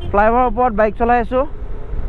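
A man's voice, with the low steady rumble of a moving motorcycle beneath it.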